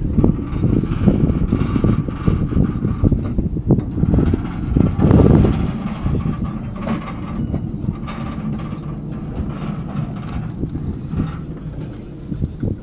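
Loaded floatplane trailer rattling and clanking as it is towed over pavement, with a faint steady whine alongside; the clatter is loudest about five seconds in.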